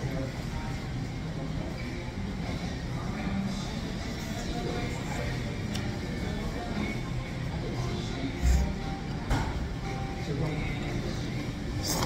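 Restaurant background: music playing and indistinct voices, with a couple of brief knocks and clicks about two-thirds of the way in.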